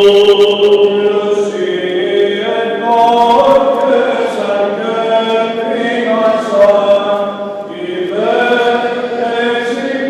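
Greek Orthodox Byzantine chant: voices singing long held notes that move slowly from pitch to pitch, dipping briefly about three-quarters of the way through before the next phrase.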